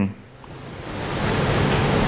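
A steady hiss of room noise that swells up over about the first second and a half, then holds level.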